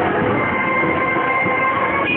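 Loud street-procession music over a dense crowd din, with several notes held steadily and no pause.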